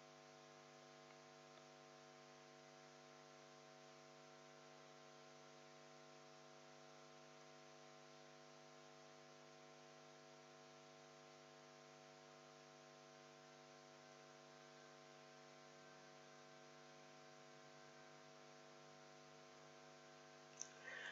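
Near silence: a faint, steady electrical hum of several even tones, unchanging throughout.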